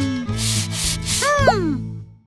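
Cartoon sound effects over children's background music with a steady bass: a scratchy rubbing noise lasting about a second, then a few quick whistle-like pitch glides, mostly falling.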